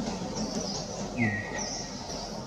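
Birds chirping outdoors in repeated short high notes, with one longer whistled note about a second in that drops slightly and holds. A brief low thump comes at the same moment as the whistle begins.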